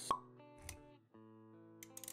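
A sharp pop sound effect right at the start over the held notes of an intro jingle, followed by a soft low thud; the music drops out for a moment about a second in, then its sustained notes resume.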